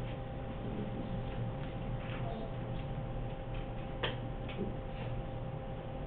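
Classroom room tone: a steady electrical hum with scattered, irregular light clicks and taps, the sharpest about four seconds in.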